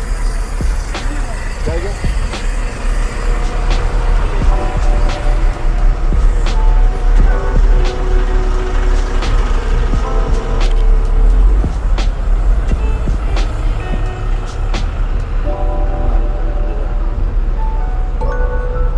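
Background music over the low rumble of city buses idling close by.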